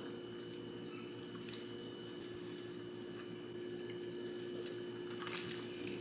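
Faint chewing over a steady low hum, then a short crackly crunch near the end as a flaky croissant is bitten into.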